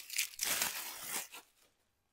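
Crinkling rustle of material being handled, lasting about a second and a half, then stopping.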